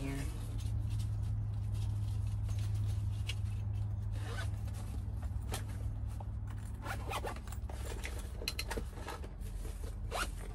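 Zipper on a fabric organizer pouch being pulled in several short strokes, with rustling of bags and items being handled, over a steady low hum.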